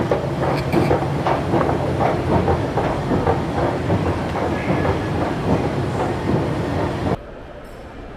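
Escalator running, a steady low hum with dense, irregular clattering and clicking from the moving steps. It stops suddenly about seven seconds in, leaving a much quieter indoor hall sound.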